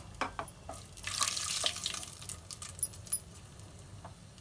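Whole spices (bay leaf, green cardamom pods, cinnamon) sizzling in hot oil in a pot, with scattered crackles and pops; the hiss swells about a second in and then eases off.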